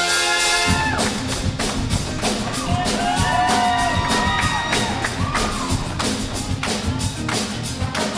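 Show choir and live band performing: a held chord breaks off under a second in and the band kicks into an up-tempo beat with a steady, sharp pulse. Voices sing over the beat from about three seconds in.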